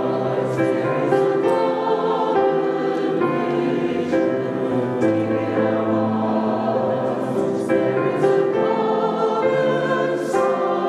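A choir singing a hymn in long, held chords.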